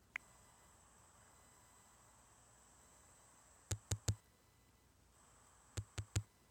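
Near silence with a faint hiss, broken by short sharp clicks: one at the start, three quick ones about four seconds in, and another near the end.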